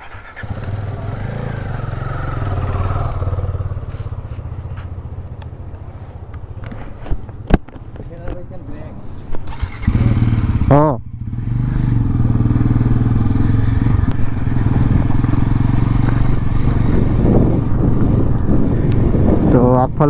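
Bajaj Pulsar NS400Z's single-cylinder engine idling, then pulling away about ten seconds in and running steadily and louder while the motorcycle is ridden.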